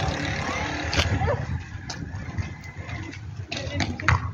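Low rumble and wind noise on the microphone while riding along a road, easing off about a second and a half in, with a few sharp clicks.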